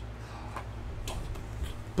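Quiet room tone: a steady low hum with a few faint, scattered ticks and clicks.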